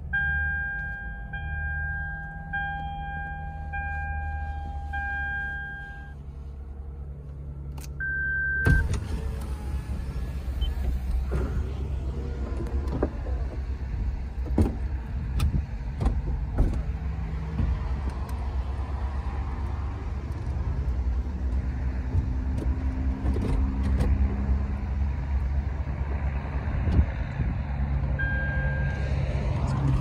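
A Lexus IS250C's dashboard warning chime beeps in a repeating pattern for about six seconds, with one more short beep near 8 s. Then the car's electric retractable hardtop mechanism runs for about twenty seconds: a motor whirring with repeated clicks and clunks.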